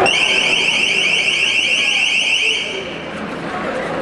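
Piercing, high-pitched electronic warbling alarm tone made of rapid rising pulses, sounding for about two and a half seconds before it cuts off suddenly.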